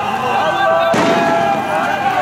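A single sharp bang about a second in, ringing out briefly over the noise of a crowd.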